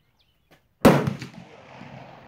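A single loud, sharp gunshot a little under a second in, followed by an echo that dies away over about a second.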